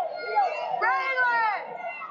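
Spectators shouting in an arena crowd, several overlapping voices including children's, with one high-pitched yell rising and falling about a second in.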